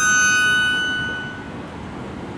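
Tango music: a sustained bandoneon chord fading away over about a second and a half into a brief lull in the music.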